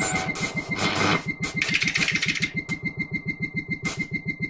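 An engine-like sound: rapid, even chugging at about a dozen pulses a second with a steady high whine throbbing along. It is noisier and rougher in the first second or so, then settles into the steady rhythm.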